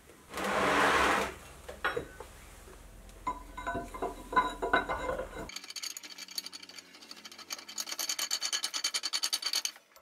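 Steel parts being fitted by hand: first a loud scrape about a second long and some metallic clicks and rattles as a guide plate is screwed on with a hex key. Then comes a fast, even run of metal-on-metal scraping, about six strokes a second, as the case-hardening-bound steel leadscrew is turned into its tapped 40 mm square thread.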